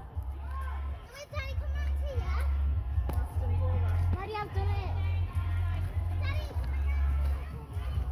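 Children's voices calling and talking in the background, over a low rumble on the microphone that comes and goes.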